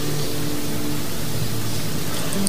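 Steady hiss with a few faint held low tones beneath it.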